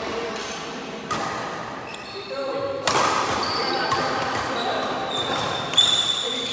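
Badminton rally: rackets strike the shuttlecock sharply about three times, at roughly one, three and six seconds in. Between the hits, shoes squeak on the wooden court floor.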